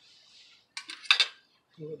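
Two sharp metallic clinks about a second in, from metal utensils knocking against a gas grill.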